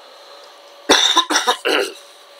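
A man coughing, three short coughs in quick succession about a second in, over faint room noise.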